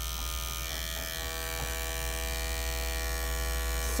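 Corded electric dog clipper fitted with a #40 blade, running steadily with an even buzzing hum as it trims the hair from between a dog's paw pads.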